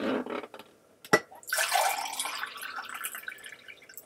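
Water poured from a plastic filter pitcher into a drinking glass: a splashing stream that starts about a second and a half in and thins out near the end. A rustle fades at the start and a sharp click comes just after a second in.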